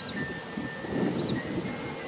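Outdoor ambience: small birds chirping in short, high, arched notes about once a second, over a low, uneven background rumble.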